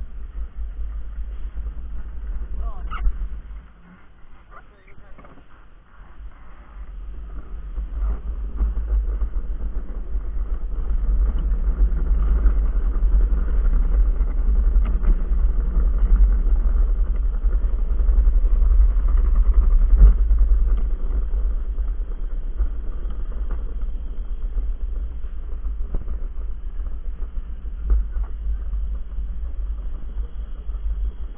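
Luge cart rolling down a concrete track: a steady low rumble of wheels and wind buffeting the microphone. It drops away for a couple of seconds early on, then builds as the cart gathers speed downhill, with an occasional sharp knock.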